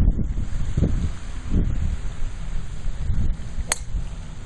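Wind buffeting the microphone, and near the end a single sharp crack of a driver striking a golf ball off the tee.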